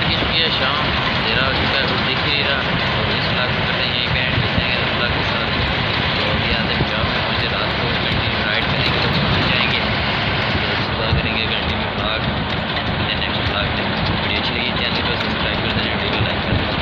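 Steady rumble and road noise inside a moving vehicle's cabin, with a young man's voice talking over it.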